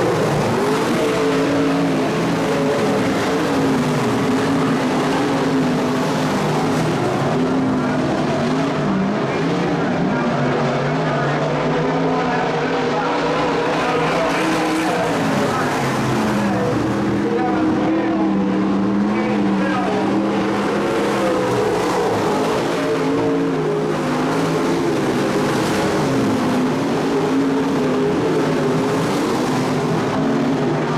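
Several IMCA modified race cars' V8 engines running at once on a dirt oval, their overlapping pitches rising and falling as the cars circle the track.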